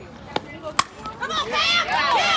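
A softball bat strikes a pitched ball with a sharp, ringing crack just under a second in, followed by spectators shouting and cheering.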